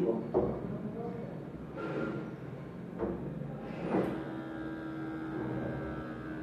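Small electric pump of an Omron upper-arm digital blood pressure monitor running to inflate the arm cuff at the start of a measurement. It makes a steady hum that is clearer from about four seconds in.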